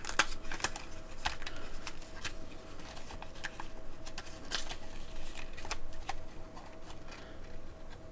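The paper wrapper inside a flat flake-tobacco tin being unfolded and handled: a run of small, irregular crinkles and clicks of paper and tin.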